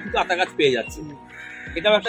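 Background music with a steady beat under a man's voice, with a crow's harsh caw about halfway through.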